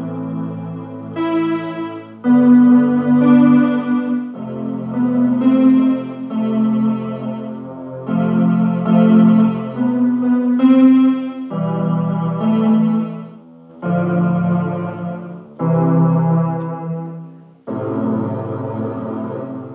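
Electronic keyboard playing a slow progression of sustained chords on a strings voice, both hands together, with a new chord struck about every one to two seconds.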